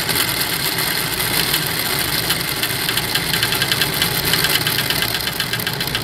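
Mousetrap car's rear axle and CD wheels spinning freely in the air, driven by the string unwinding as the trap's spring pulls the lengthened lever: a steady whirring rattle with fast regular ticking.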